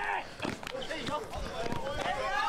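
Indistinct men's voices calling out on an outdoor basketball court, with a couple of short low thumps.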